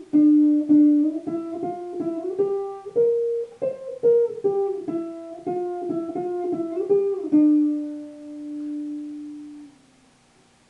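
Single-cutaway electric guitar playing a melody one picked note at a time, about two or three notes a second. It ends on one long held note that fades out shortly before the end.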